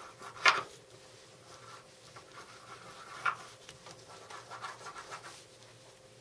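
A magnet being rubbed and scraped across a flexible fridge-magnet sheet to wipe out its magnetized pattern. A faint scratching runs through it, with two louder strokes, about half a second in and a little after three seconds.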